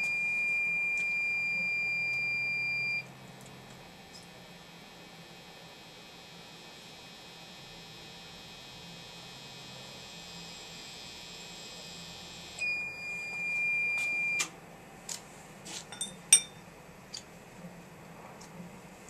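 Hot-wire quench-oil tester beeping with a steady high tone for about three seconds, then a faint electrical hum during the test run, then a second beep of about two seconds. A few sharp clicks and clinks follow near the end as the wire probe and glass beaker are handled, one of them the loudest sound.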